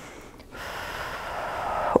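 A woman breathing: a faint breath, then from about half a second in a long audible inhale that grows louder for about a second and a half.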